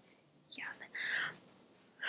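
A woman saying "yeah" in a quiet, whispered voice, about half a second in; the rest is near silence.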